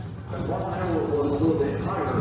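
Indistinct voice talking quietly over a steady low hum; no race engine launches.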